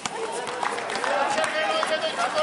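Several voices calling and talking over one another during a basketball game, with a few short knocks from play on the court.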